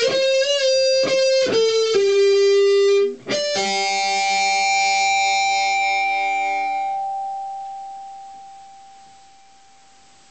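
Solo electric guitar playing the last phrase of a melody, several single notes with vibrato, then after a brief break a final note that rings on and slowly fades away.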